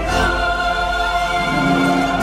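Mixed choir of men's and women's voices singing together in harmony, holding sustained notes, with a lower line coming in about one and a half seconds in.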